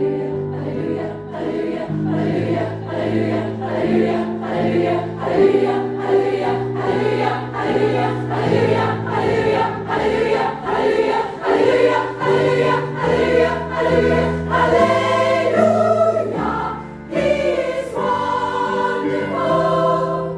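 Women's choir singing a gospel-style choral piece in full harmony over an accompaniment with a steady pulse, about two beats a second, and a low bass line beneath the voices.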